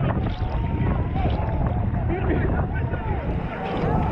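Children in the sea screaming and crying as they are rescued, several wailing voices overlapping, over heavy wind rumble on the microphone and rough sea.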